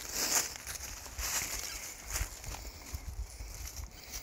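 Dry fallen leaves rustling and crackling in irregular bursts, with a few sharper snaps, as a dog pushes its way under a fallen log.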